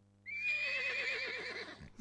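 A horse whinnying once: a single long, quavering call that begins about a quarter second in and dies away near the end.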